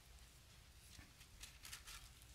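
Near silence: room tone with a low hum and a few faint soft ticks in the second half.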